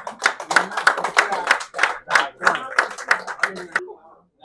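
A small group of people clapping their hands in quick, uneven claps, several a second, with voices mixed in. The clapping stops shortly before the end.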